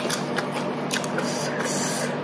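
Close-up eating sounds: crunchy chewing of raw vegetables, with irregular crackles and clicks as fingers pick through rice noodles and salad on a metal plate. A low steady hum runs underneath.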